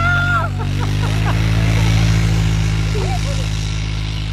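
Polaris Sportsman ATV engine running steadily as it tows a sled through deep snow, with children's voices in the first second or so.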